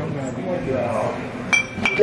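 Stemmed wine glasses clinking together in a toast: two clinks about a third of a second apart near the end, each ringing briefly at a high pitch.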